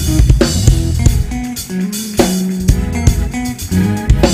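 Live church praise band playing an upbeat groove with bass guitar, guitar and drum kit, the congregation clapping along.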